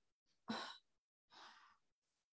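A woman takes two short breaths, about half a second in and again about a second later; the second is fainter.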